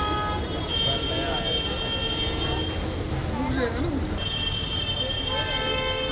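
Vehicle horns honking in two long held blasts, the second starting about four seconds in, over steady street-traffic rumble.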